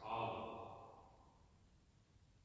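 A man's voice finishing a word, the sound trailing off over about a second in the large church, then quiet room tone.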